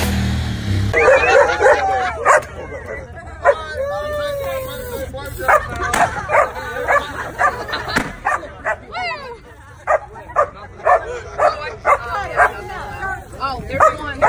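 A dog yipping and whining in many short, high-pitched yelps that rise and fall in pitch. The yelps come at about two a second toward the end.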